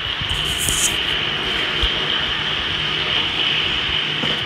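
Water running steadily from a temporary pipe off the well into a storage tank: a continuous rushing, with a faint steady low hum under it.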